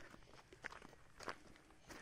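Faint footsteps on dry, stony dirt ground: three soft steps, a little over half a second apart.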